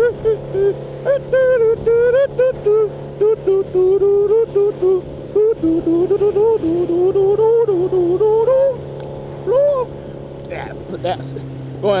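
A man singing a tune with long, wavering held notes over the steady hum of a motorcycle engine at cruising speed. The singing stops about ten seconds in, leaving the engine and road noise.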